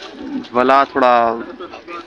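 A man's voice speaking: a short run of drawn-out, falling syllables between brief pauses.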